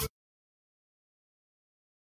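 Live band music cuts off abruptly at the very start, followed by dead silence with no sound at all.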